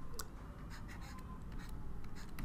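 Stylus writing on a tablet: a string of faint, short scratches and taps as handwritten characters are drawn.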